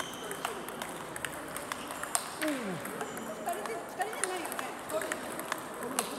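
Table tennis balls clicking off rackets and the table in a rally, with irregular sharp clicks from rallies at neighbouring tables in an echoing gym.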